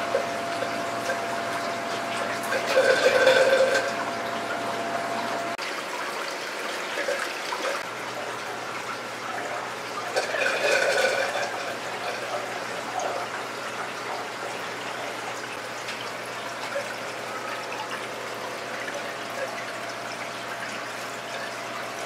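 Steady sound of running water and circulation in an aquarium room, with two louder spells of water sloshing and splashing, about three seconds in and again around ten to eleven seconds, as clownfish are netted and moved into a tank.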